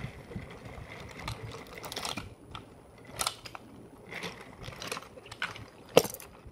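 Wooden toy train trucks rolling along wooden track, with scattered clicks and rattles of wheels and couplings, and one sharp click near the end.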